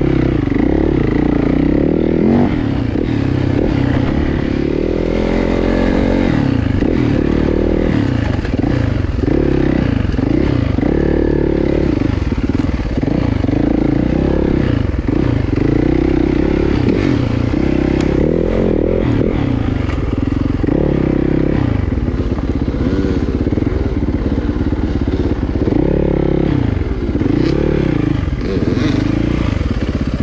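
Dirt bike engine being ridden along a rough bush trail, its revs rising and falling over and over as the throttle is worked, every second or two, with a few sharp knocks along the way.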